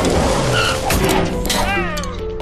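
Commercial sound effects: a loud rushing whoosh that fades, a few sharp clicks, and a brief squealing glide that rises and falls near the end as music begins.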